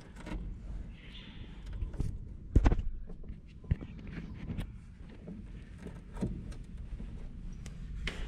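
Scattered clicks, knocks and rustles from hands working a red power cable into a car-audio amplifier's power terminal. The loudest knock comes a little before the middle, with a few lighter clicks after it.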